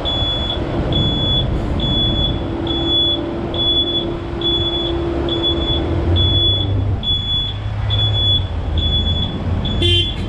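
Cat 308 mini excavator's diesel engine running, with a high-pitched alarm beeping steadily about one and a half times a second. The engine note shifts lower about six seconds in.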